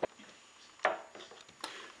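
Three brief knocks as a metal mixing bowl of dough is handled on a kitchen counter: one right at the start, one just under a second in, and a fainter one near the end.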